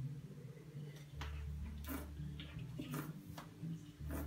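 Sipping and swallowing wine from a glass: a handful of short, soft wet clicks from the mouth and throat over a low hum that comes and goes. Near the end the glass is lowered toward the table.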